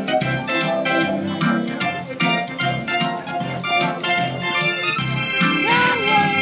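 Organ playing a tune of sustained chords over a steady beat.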